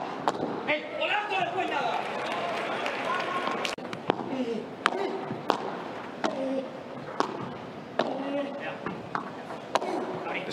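Padel ball being struck back and forth with solid padel rackets in a rally, a series of sharp pops at irregular intervals roughly a second apart, over background voices.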